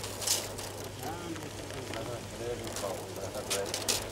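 Faint voices talking in the background over a steady low hum, with a few brief rustles.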